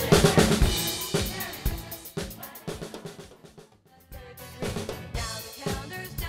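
Mapex Tornado drum kit played along with a backing track, with snare, bass drum and cymbal hits. It is loud at first, then thins out and dies away about three seconds in. Quieter music starts about four seconds in.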